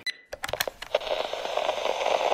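Title-card intro sound effect: a few sharp clicks and crackles, then a steady hiss from about a second in.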